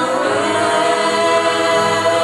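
A mixed vocal group of women and men singing a gospel song into microphones, holding long sustained notes in harmony.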